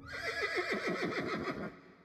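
A horse whinnying: one call of quick, wavering pulses that drop in pitch, lasting about a second and a half and cutting off sharply.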